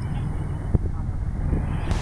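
Small boat's engine running at low revs, a steady low hum, with one sharp knock about three-quarters of a second in.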